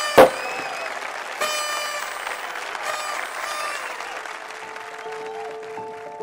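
Crowd applauding and cheering, with high pitched shouted cheers rising above the clapping twice. There is one sharp loud hit just after the start. Near the end, steady held music notes come in under the applause.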